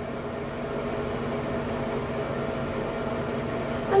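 Light-and-fan combo unit running with a steady, even hum.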